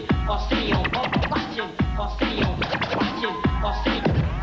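Vinyl record scratching on turntables over a hip-hop beat with heavy bass: many quick back-and-forth scratches, the pitch sweeping up and down several times a second.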